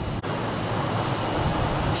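Steady rushing noise of water treatment plant equipment and flowing water, with a faint high-pitched tone above it.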